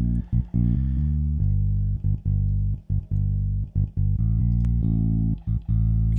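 Soloed bass guitar track playing a line of held low notes broken by short gaps, played back through the u-he Satin tape emulation plug-in, bypassed at first and switched in partway through, where the tape emulation colours the mid and low mid.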